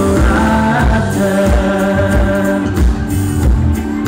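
Loud Thai pop song with a steady beat and male voices singing, played live over a stage sound system.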